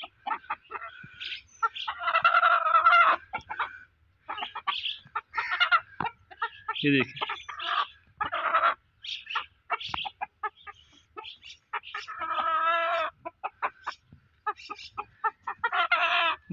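Chickens clucking, a desi rooster and a hen: many short, quick clucks throughout, with two longer drawn-out calls, one about two seconds in and one about twelve seconds in.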